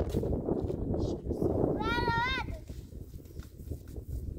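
Crunching and scuffing of footsteps on stony, snowy ground and dry brush, with a high voice calling out once about two seconds in; the ground noise thins out after that.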